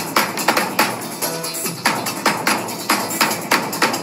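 Large double-headed drums beaten with sticks by a group of drummers: a brisk, loud pattern of strikes, about three a second, with a faint melodic line underneath.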